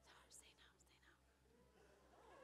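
Near silence, with a few faint voices during the first second.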